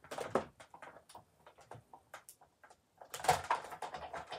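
Big Shot die-cutting machine being hand-cranked as a stack of cutting plates and a scalloped die rolls through its rollers. It gives irregular clicks and knocks: a burst at the start, sparse ticks in the middle and a louder cluster a little after three seconds. The plates are fed at a slight angle to ease the pass.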